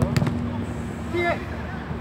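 A football kicked hard on an artificial-turf pitch, a sharp smack right at the start. About a second later a player gives a short shout.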